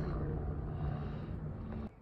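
Steady low background rumble with a faint low hum. It cuts off abruptly near the end, where the recording was stopped by an accidental button press.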